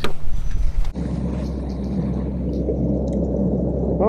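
Mercury Pro XS outboard on a bass boat running with a steady low rumble, heard after a sudden change about a second in; a short patch of handling noise comes before it.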